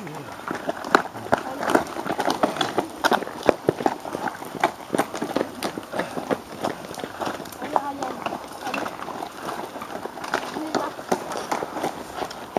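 Cyclocross riders running and pushing their bikes up a steep slope covered in dry fallen leaves: a dense, irregular run of footsteps, crunching leaves and knocks from the bikes.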